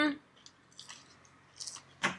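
Faint chewing of air-fried breaded chicken, with a few soft, wet mouth sounds about a second and a second and a half in, after a short hummed "mm" at the start.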